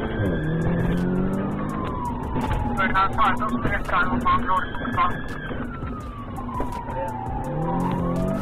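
Police car siren on a slow wail, rising and falling about every four to five seconds, heard from inside the pursuing patrol car. Under it the patrol car's engine works hard under acceleration, climbing in pitch at the start and again near the end.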